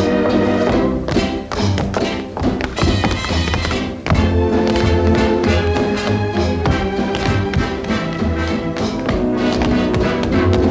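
Dance-band orchestra music from a 1930s film soundtrack, with tap-dance steps clicking sharply over it, thickest in the first few seconds. The music dips briefly just before the fourth second, then comes back loud.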